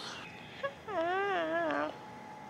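A wavering, whiny voiced sound, about a second long, after a short blip.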